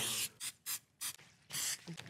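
Aerosol cooking spray hissing onto the plates of a waffle iron in about four short squirts.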